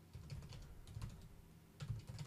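Computer keyboard being typed on: faint runs of quick keystrokes, a short pause past the middle, then more keystrokes near the end, entering a command at a Windows command prompt.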